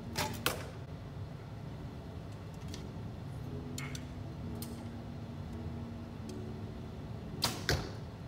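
A recurve bow shot: a sharp snap of the string on release, then, about a third of a second later, a second sharp knock that fits the arrow striking the target. Near the end, another close pair of sharp knocks.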